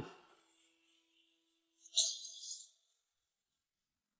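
Near silence, broken about two seconds in by one brief, high-pitched rustle lasting about half a second.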